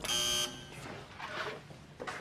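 A short electric buzzer sounding once for about half a second, then faint room sounds.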